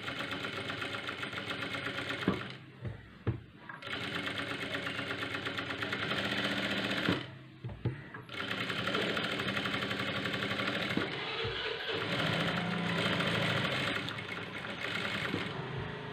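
Industrial sewing machine stitching cloth at a fast, even rate, in three runs with brief stops about two and a half seconds in and again about seven seconds in.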